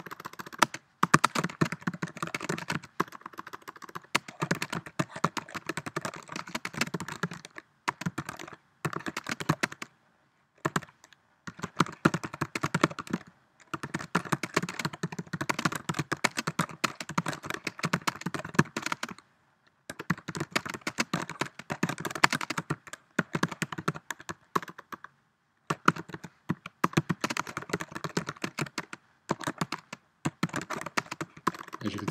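Fast typing on a computer keyboard: dense runs of key clicks broken by brief pauses of about a second.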